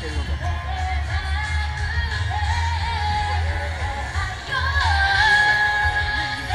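A woman singing a pop song to her own acoustic guitar through a PA system, ending on a long held note that is louder than the rest. Strong wind buffets the microphone, adding a low fluttering rumble.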